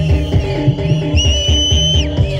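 Bantengan accompaniment music: a rhythmic pattern of drums and pitched percussion. A high, steady whistle-like tone comes in with a short upward slide just past halfway and holds until the end.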